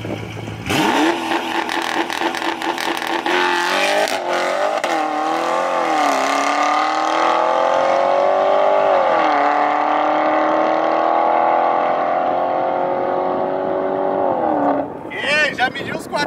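Tuned Porsche Panamera Turbo S E-Hybrid's twin-turbo V8 accelerating hard from a standing start. The engine note climbs and drops back at each of several quick upshifts, then pulls steadily upward in a long final gear before cutting off near the end.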